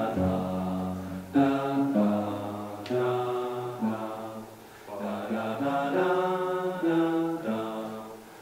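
Alto saxophone and trumpet playing long held notes in harmony, in slow phrases of a second or two separated by short breaks.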